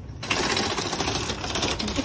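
Metal shopping cart rattling as it is pushed over pavement, a rapid, continuous clatter of wheels and wire basket that starts a moment in.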